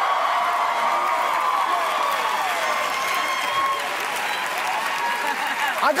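Studio audience applauding and cheering, with shouts and whoops over the clapping; it eases slightly after about four seconds.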